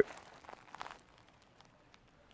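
A few faint clicks of laptop keys in the first second, then near silence.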